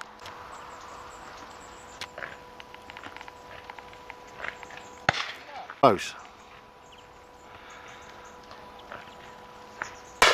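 Distant shotgun reports from other guns along the line: scattered faint cracks, the sharpest about five seconds in, over a faint steady hum.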